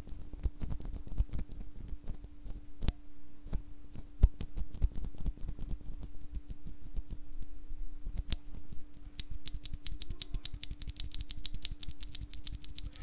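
A single broken-in Novelkeys Cream mechanical keyboard switch, POM stem in a POM housing, pressed and released by hand again and again. Each press gives a short click with a little spring pinging, and the presses come faster near the end.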